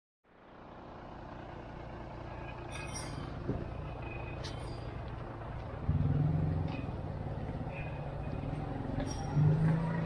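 Town street ambience with traffic noise, fading in at the start; a motor vehicle engine runs close by with a low steady hum, louder from about six seconds in and again near the end, with a few short clicks over it.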